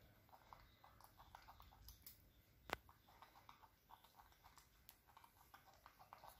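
Faint, quick crunching of a baby monkey chewing raw cauliflower, with one sharper click a little under three seconds in.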